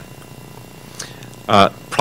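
A pause in a man's speech: faint room tone, then a single short "uh" from him near the end.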